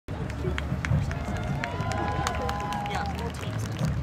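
Spectators' voices at an outdoor stadium, with one held call rising and falling about halfway through, over a low rumble on the microphone and scattered sharp clicks.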